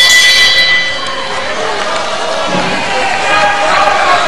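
Ring bell struck once, ringing with several high tones and dying away within about a second, signalling the end of a round; a murmur of crowd voices follows.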